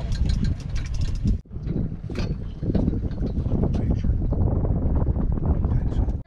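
Fishing reel clicking rapidly with a fish on the line, most distinctly in the first second and a half, over wind rumbling on the microphone.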